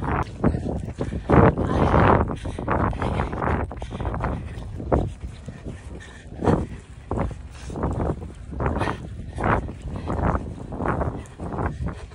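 A runner's heavy, quick breathing, in regular breaths a little more than one a second, as she tires late in a long run.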